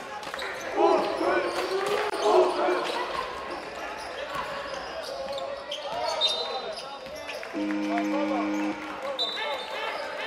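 A basketball being dribbled on a hardwood court in a large gym, with players shouting. A referee's whistle sounds about six seconds in and again near the end, and a low horn sounds for about a second in between as play stops.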